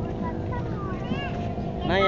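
Voices chattering against a dense background haze with a steady hum underneath. A louder voice rises up near the end.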